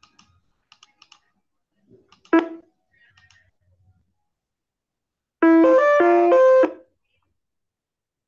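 A few faint clicks like typing on a computer keyboard, and a brief loud pitched sound a little over two seconds in. Then, the loudest thing: a short melody of several stepped notes lasting about a second and a half, past the middle.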